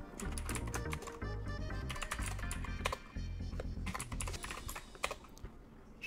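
Typing on a computer keyboard, a run of quick key clicks, with background music underneath.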